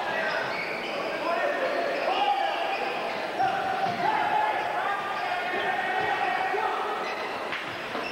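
Basketball game play on a hardwood gym floor: the ball bouncing amid the voices and shouts of players and spectators, with one sharp knock near the end.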